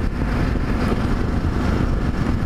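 Yamaha XT 660Z Ténéré's single-cylinder engine running steadily while the motorcycle rides along, a low, even drone mixed with a rush of wind and road noise on the microphone.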